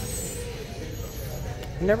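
A steady low hum of background noise, with a faint steady tone above it; a voice starts speaking near the end.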